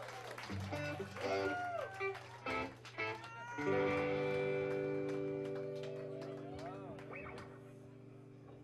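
Electric guitar and bass picking a few short notes, then a chord struck a little over three seconds in that rings on and slowly fades.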